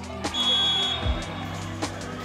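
Background music with a steady beat. A referee's whistle sounds once, a short steady high blast that ends the rally, over a couple of sharp knocks.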